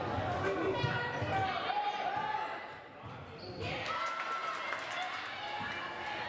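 Basketball game in a gymnasium: the ball bouncing on the hardwood court amid indistinct voices of players and spectators, echoing in the hall.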